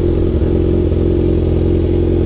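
Kawasaki Ninja 1000SX's inline-four engine breathing through an Austin Racing full-system aftermarket exhaust, running at a steady, even note as the bike cruises at low speed.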